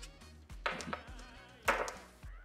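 Background music with a steady bass line. Twice, about a second apart, a short sharp click as broken steel fragments of a driveshaft's splined end are set down on a cloth-covered workbench; the second click is the louder.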